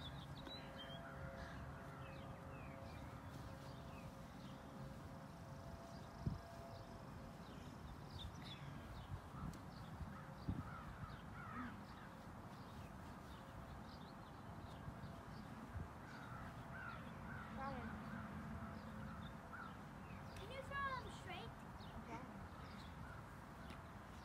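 Birds calling outdoors in a steady background hush, the calls clustering between about sixteen and twenty-one seconds in, with a single sharp knock about six seconds in.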